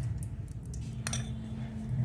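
A few light clinks of a metal spoon as ghee is spooned into a heated steel pressure cooker, one clearer clink about a second in, over a steady low hum.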